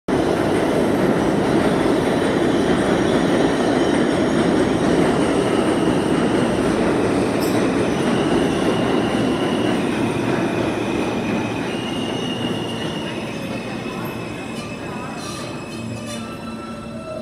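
New York City subway R160 train pulling into an underground station along the platform: a loud, steady rumble of wheels on rail that eases off as the train slows almost to a stop. Through the second half, high steady tones come in and step up and down in pitch as it brakes.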